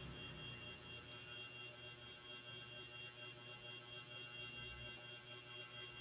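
Very quiet room tone: a faint, steady high-pitched whine over a low hum, with no distinct sounds.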